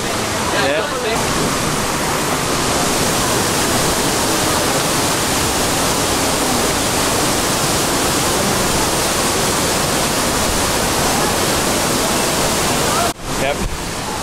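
Waterfall pouring into the stream pool below it, a steady, even rushing of water. The sound cuts off abruptly about a second before the end.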